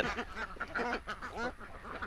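A flock of domestic ducks quacking quietly now and then.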